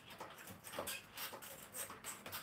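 Mini stepper worked at a quick pace, its pedals making a short, high-pitched squeak with each stroke, about three a second.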